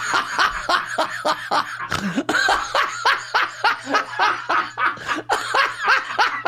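Laughter at the punchline of a joke: a long run of short, evenly repeating bursts of about four or five a second.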